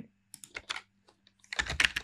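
Typing on a computer keyboard: a few light keystrokes, then a quicker, louder run of strokes near the end.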